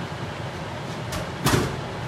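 A single short knock about one and a half seconds in, over a steady rush from the vent fan above the stove.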